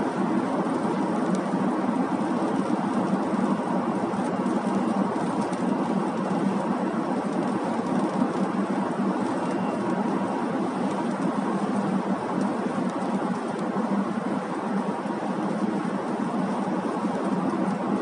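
Steady road and tyre noise of a car travelling at highway speed, an even rush with no sudden changes.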